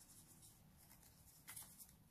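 Near silence, with faint rustling of a sheet of origami paper being creased by hand, a little louder about one and a half seconds in.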